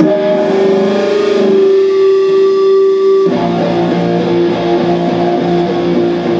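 Electric guitar starting a rock song with loud, held ringing notes; about three seconds in, the drums and the rest of the live band come in together.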